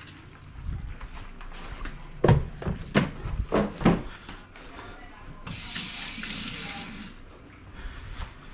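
A few quick knocks and clatters, then a kitchen faucet runs into a stainless steel sink for about a second and a half before it is shut off.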